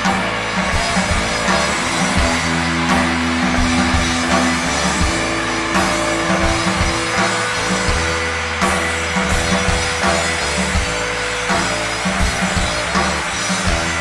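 Live rock band playing: distorted electric guitars holding long sustained notes over bass guitar and a drum kit.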